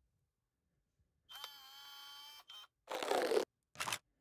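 Edited intro sound effects for an animated logo: a steady electronic tone with many overtones lasting about a second, a short blip, then a noisy burst and a shorter one just before the end.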